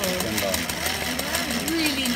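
Old Singer sewing machine converted for al aire embroidery, running and stitching through fabric held in a hoop: a rapid, even clatter of the needle going up and down.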